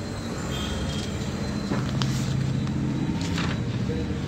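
Sheets of paper rustling as they are handled, with a couple of short crackles, over a steady low rumble that swells in the middle.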